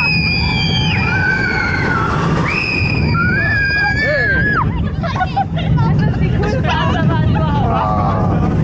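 Roller coaster riders whooping and screaming in long, held high cries that bend in pitch, giving way in the second half to mixed shouting and laughter. A steady low rumble of the moving train runs under the voices.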